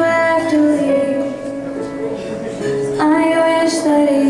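Woman singing a slow ballad with live band accompaniment: a long held note, then a new phrase starting about three seconds in.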